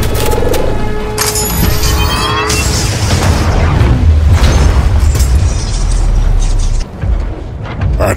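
Added film-style battle sound effects: heavy booms and sharp metallic hits over background music, with a rising whine about a second in.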